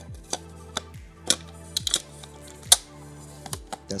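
Background music with a steady beat, over a few sharp clicks and clacks of a metal reflector dish being fitted onto a Godox SL60W video light's Bowens mount, the loudest a little before three seconds in.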